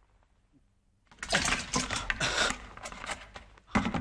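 Clattering and rattling of containers being handled at an open refrigerator, starting about a second in, with a sharp knock just before the end.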